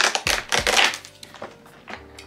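Cardboard advent calendar door being pushed in and pried open by hand, with a few sharp rustling clicks in the first second, over soft background music.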